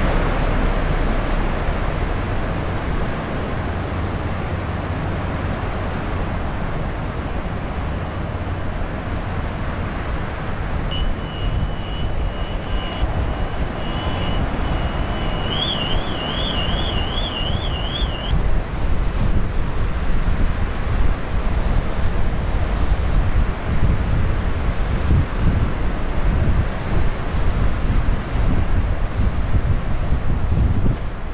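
Wind buffeting the microphone and sea water churning along the hull of a ferry under way, over the steady low rumble of the ship. A high warbling tone sounds for a few seconds around the middle, and the wind gusts harder in the second half.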